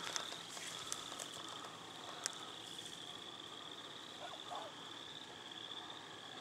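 Faint, steady high-pitched trilling of night insects, with a single small click about two seconds in.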